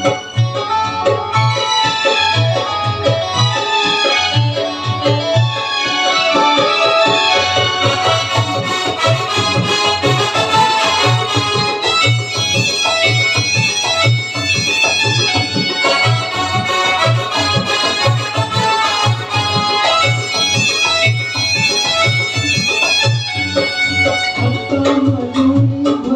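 Electronic keyboard playing an instrumental passage of a Chhattisgarhi song, with melody lines over a steady, repeating low beat.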